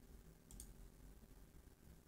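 Computer mouse clicking twice in quick succession about half a second in, faint over a low room hum.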